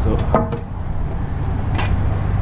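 A 2x4 board being picked up from a pile of cut lumber, with a light wooden knock near the end, over a steady low rumble.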